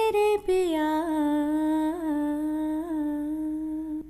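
A woman singing unaccompanied, holding one long vowel on a steady pitch with small ornamental wavers, after a brief break near the start.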